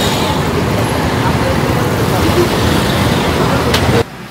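Steady street traffic noise, a continuous even rush of passing vehicles with faint voices mixed in, cutting off abruptly at the end.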